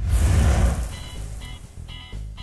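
An editing sound effect: a sudden noisy burst with a low rumble that fades away over about a second. It is followed by background music, with short repeated notes.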